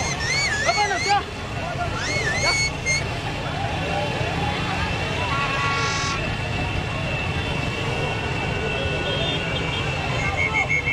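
Motorcycles running in a slow procession with crowd voices, high wavering whistle-like tones in the first few seconds, and one horn blast about five seconds in.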